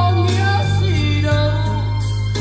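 Karaoke song played loud through a Best BT-6920 trolley karaoke speaker with a 50 cm bass driver, with heavy steady bass under a sung melody.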